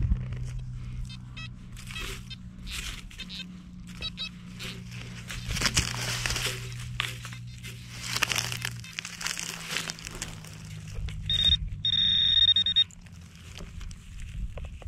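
Rustling and scraping of dry stubble and loose soil being handled around a dug hole. Near the end comes a loud, steady, high electronic tone about a second and a half long: a metal detector's target signal.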